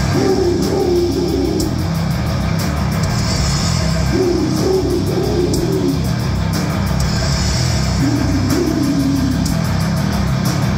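Three-piece death metal band playing live: distorted electric guitar and bass guitar over a drum kit with cymbal hits. A riff phrase comes back about every four seconds.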